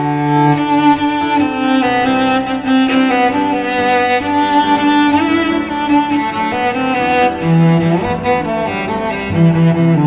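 Instrumental cello cover music: bowed cellos play a melody in held notes over lower bass notes.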